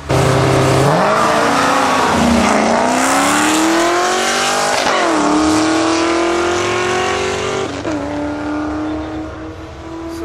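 A bolt-on Chevrolet Camaro and a Dodge Charger with the 392 Hemi V8 launching together in a street race and accelerating hard. The engines rise in pitch through each gear, dropping sharply at upshifts about two, five and eight seconds in, then fade as the cars pull away.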